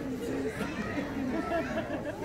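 Overlapping chatter of several people talking at once, with no distinct words.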